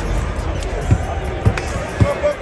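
Basketballs bouncing on a hardwood court during shootaround, with two sharper thumps about a second and a second and a half in, under arena music and crowd chatter.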